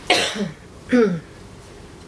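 A woman clearing her throat with two short coughs about a second apart, each ending in a falling voiced sound.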